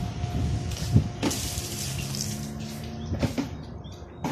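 A steady low mechanical hum, with a few short knocks and scuffs about a second in and again just after three seconds.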